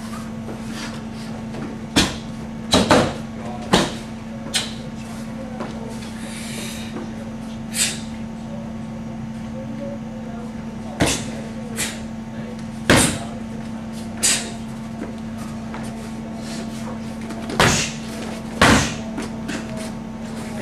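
Martial-arts kicks slapping against hand-held paddle targets: about a dozen sharp, irregularly spaced strikes, some in quick pairs.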